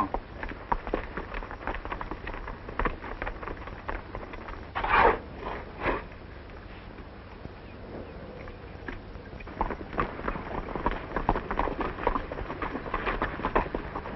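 Horses' hooves clopping irregularly over ground as riders move up, growing busier in the last few seconds, with one brief louder sound about five seconds in.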